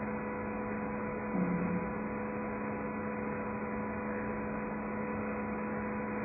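Steady electrical hum with a background hiss in the recording, a few even tones held throughout. A brief faint low sound about one and a half seconds in.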